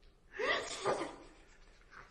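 A short, breathy, gasp-like vocal sound that swells twice within about half a second.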